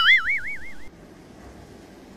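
A cartoon-style comedy sound effect: a high tone that starts suddenly, wobbles rapidly up and down in pitch and fades out a little under a second in. Faint room tone follows.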